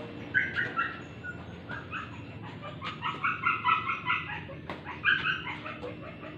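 A bird calling in short runs of quick repeated notes, fastest in the middle. A few sharp taps of a badminton racket striking a shuttlecock are heard alongside.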